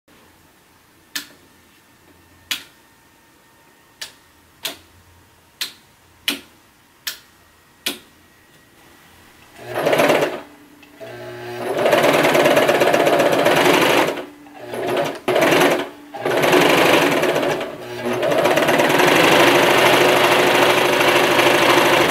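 About eight single sharp clicks, spaced a second or so apart. Then a Brother electric sewing machine runs loudly with a fast mechanical clatter, stopping and restarting several times as its foot control is worked.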